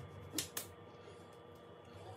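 Two quick, sharp clicks about half a second in, from avocado halves and utensils being handled on a kitchen countertop, over a faint steady hum.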